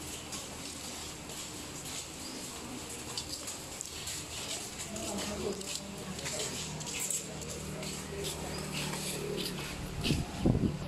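Low murmur of several people talking quietly, a little louder in the second half, with scattered faint high-pitched chirps.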